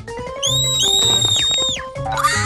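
Cartoon background music with a repeating bass line. About half a second in, a high, steady whistle-like tone sounds and a second one joins it; both hold and then bend down and stop shortly before the end.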